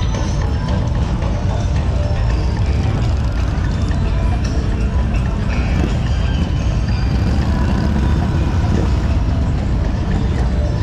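Motorcycle engines running in busy rally street traffic, a steady low rumble, mixed with music.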